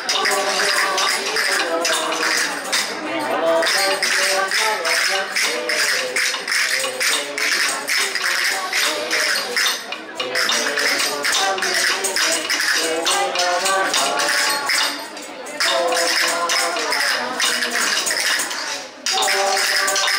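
Christmas carol (villancico) played live as folk dance music: voices carrying a melody over tambourines shaken and struck on a steady beat, with two short breaks in the second half.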